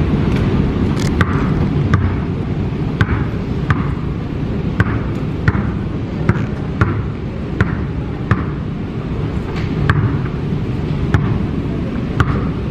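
Basketball dribbled one-handed on an airport moving walkway, each bounce a sharp slap about every three quarters of a second, over a steady low rumble.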